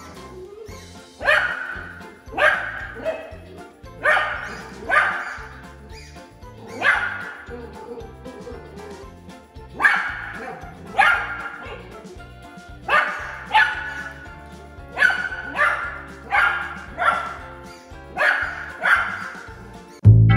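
Miniature dachshund barking repeatedly, in short sharp barks that come singly or in quick pairs about every second. Music plays underneath.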